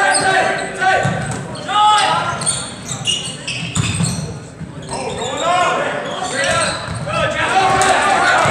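Live basketball play on a hardwood gym floor: the ball bouncing, sneakers squeaking in short high squeals, and players and spectators calling out, all echoing in the gym. Things go briefly quieter about halfway through.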